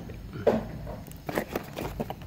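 Cardboard packaging being handled: a sharp knock about half a second in, then a few lighter taps and scrapes.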